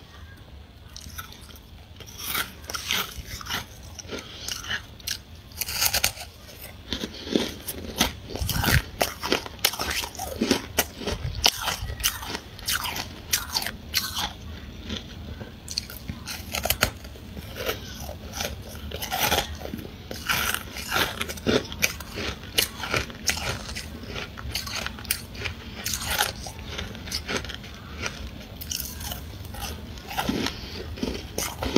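Freezer frost being bitten and chewed close to the microphone: a dense, irregular run of crisp crunches, several a second.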